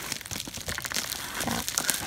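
Bubble wrap and plastic wrapping crinkling as hands grip and handle a wrapped package, a steady run of small irregular crackles.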